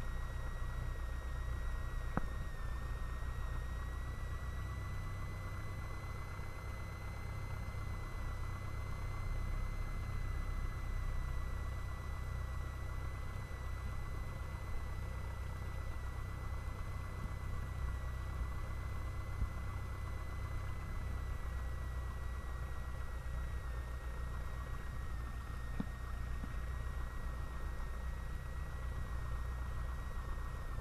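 Cessna 172 Skyhawk's piston engine running at low taxi power, heard as a steady low drone through the cockpit intercom feed, with a thin steady whine above it. There is a small click about two seconds in.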